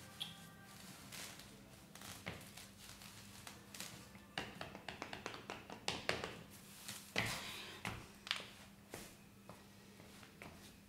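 Wicker chair creaking and crackling as a person shifts and gets up from it, followed by a few footsteps on a wooden stage floor.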